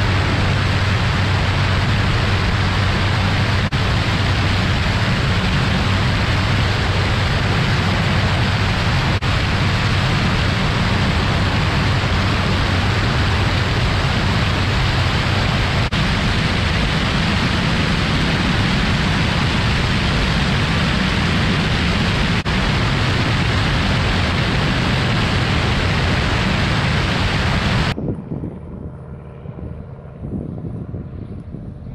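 Loud, steady in-flight noise of a propeller aircraft heard from aboard a chase plane: a low engine and propeller hum under a rushing hiss of airflow. It cuts off abruptly a couple of seconds before the end, leaving quieter outdoor wind noise.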